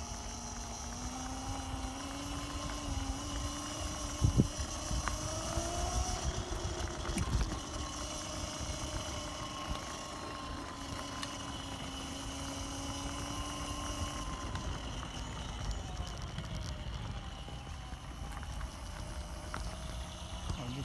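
Electric scooter riding over block paving. Its motor whine rises in pitch as it speeds up in the first few seconds, holds steady, then drops away in the second half. Under it is a constant rumble of the small tyres on the paving stones, with a couple of sharp knocks from bumps a few seconds in.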